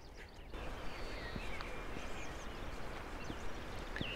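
Mountain morning ambience: a steady low hiss of open air, with a few faint bird chirps over it.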